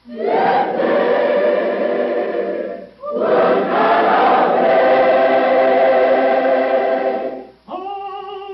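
A choir singing two long held chords, the first about three seconds long and the second about four, with a brief break between them.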